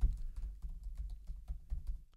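Typing on a computer keyboard: a quick, steady run of keystroke clicks, several a second.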